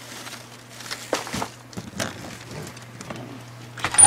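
Soft rustling and a few light knocks from handling things and moving about, over a steady low hum. It ends in one sharp, loud click as a door is taken hold of and opened.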